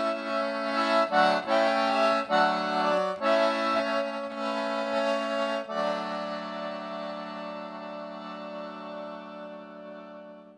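Concertina playing the closing bars of a traditional song alone: a few quick chord changes, then a final chord held from about six seconds in that fades slowly away.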